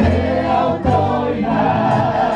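Live amplified worship music: men singing into microphones over an electronic keyboard, with several voices singing together.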